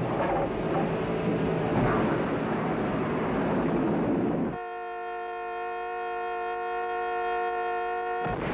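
A car driving fast, engine and tyre noise, for about four and a half seconds. The road noise then cuts off suddenly and a steady, held chord of several tones sounds to the end.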